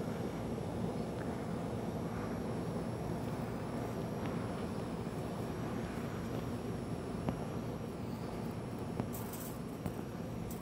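Steady low outdoor rumble with a few faint clicks.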